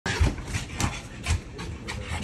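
Boston terriers panting and scrambling while jumping at a door, with a short knock about every half second.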